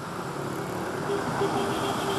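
Road traffic: cars driving past on a city street, a steady rush of engines and tyres.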